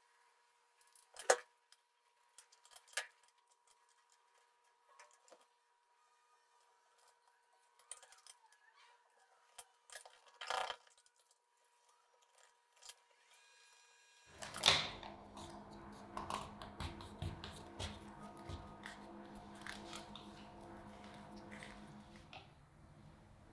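Scattered crackles and clicks of stiff paper and a sticky adhesive backing being bent, peeled and trimmed by hand. About two-thirds in, a steady low hum with a few held tones starts and runs under more small clicks and scrapes.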